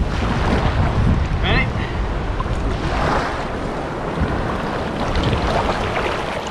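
Shallow seawater sloshing and splashing around a person's legs as he wades, with wind buffeting the microphone and surf washing in the background.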